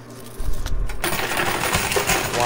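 Coin pusher machine: a low rumble, then from about a second in a dense clatter of quarters and casino chips as the pusher shoves the pile and a tall stack of chips topples over.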